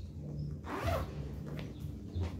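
Zipper on a clear plastic baby-shawl bag being pulled open, with the plastic rustling; the main pull comes about halfway in, with fainter scrapes after it.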